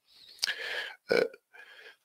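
A man's breath and throat sounds close to the microphone between sentences: an audible breath about half a second in, then a short throat sound just after a second.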